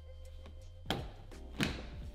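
Two short knocks of the plastic door card of a VW T5 van being pressed into place on the door, about a second in and again near the end, over quiet background music.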